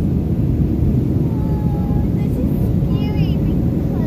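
Steady low rumble of cabin noise inside a Southwest Boeing 737 jet airliner in flight, with faint voices nearby.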